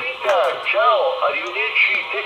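A man's voice received over the 2 m amateur band and played through a Quansheng handheld transceiver's small speaker: thin, tinny speech with no low end.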